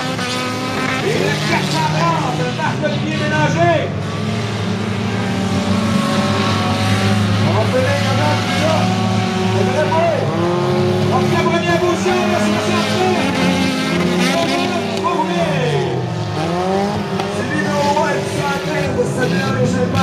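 Several four-cylinder stock car engines racing together on a dirt track, revving up and down as the cars slide through the corners.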